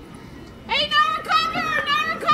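High-pitched girls' voices shouting loudly, starting under a second in, over faint outdoor field noise.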